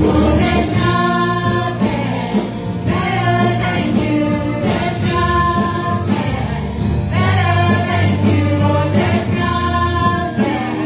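Live church worship band: several voices singing together over guitars and keyboard, in a gospel style.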